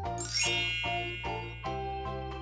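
A bright chime sound effect rings out about a quarter second in, a quick rising shimmer that then rings on and slowly fades, over light background music with evenly spaced notes.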